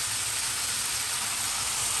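Thinly sliced fatty beef sizzling steadily in a hot skillet as a soy-sauce-and-mirin sauce is poured over it.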